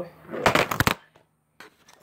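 Handling noise from the recording phone as it is knocked out of position: a short burst of rubbing and clattering about half a second in. Then a near-silent pause with a few small clicks near the end.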